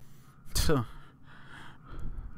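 A man's short laugh: one loud burst falling in pitch about half a second in, then a softer breath.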